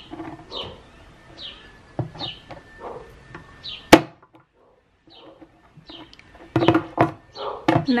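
A screwdriver pressed into the knockout holes on the bottom of a plastic flower pot, with small clicks and taps, then one sharp loud snap about four seconds in as a knockout pops through. A bird chirps repeatedly in the background with short falling chirps, and a few knocks follow near the end as a pot is handled.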